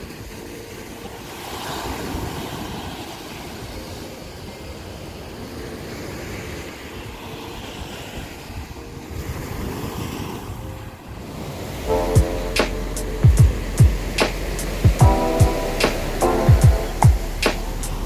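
Surf washing up onto a sandy beach, a steady rushing noise that swells and eases with the waves. About twelve seconds in, background music with a steady beat and bass comes in over it.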